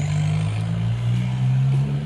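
Steady low drone of a motor vehicle's engine close by, its pitch shifting slightly twice.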